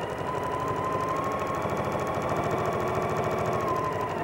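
Electric domestic sewing machine running at a steady speed, stitching a seam through two layers of cotton quilting fabric: a steady motor whine over a fast, even stitch rhythm.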